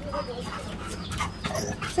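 A Labrador retriever whining: a thin, wavering whine in the first half-second, with a few light clicks around it.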